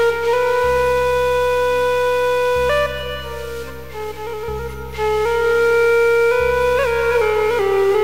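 Electronic keyboard playing a slow improvised Arabic taqasim melody moving between the Ajam and Bayati maqams. Long held notes with short ornaments and slides sit over low sustained notes that change about every two seconds.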